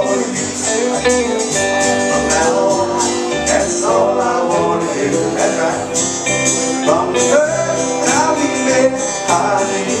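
Small live band playing a country song: acoustic and electric guitars, bass and drums, amplified through a PA.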